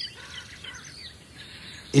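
Faint bird chirps, short high calls scattered through a quiet background ambience.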